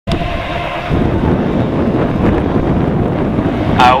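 Low rumbling wind buffeting the microphone, over the noise of single-seat autograss racing cars' engines revving on the start line; it grows louder about a second in.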